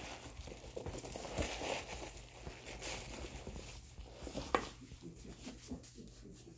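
Soft crinkling and rustling of packing stuffing as gloved hands push it into a leather handbag, with a few light clicks and knocks.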